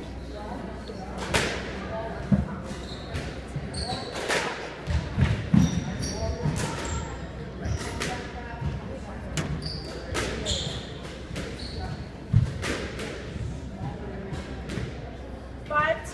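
Squash rally: the ball cracks off racquets and the court walls in an irregular series of sharp hits, with thuds of footwork on the wooden floor. The loudest hits come about two, five and twelve seconds in.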